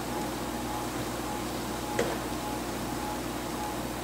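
Steady background hum of the room, like a fan or ventilation, with one brief click about halfway through.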